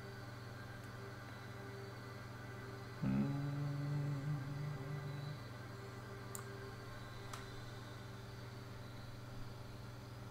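Quiet steady low electrical hum of a home recording setup. About three seconds in, a low held tone runs for roughly two seconds, and two faint clicks come a second apart a little later.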